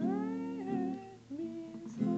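Acoustic guitar chords with a man's voice singing a note that slides upward and then holds and fades. A fresh guitar chord comes in just past halfway.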